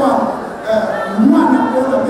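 A man speaking into microphones.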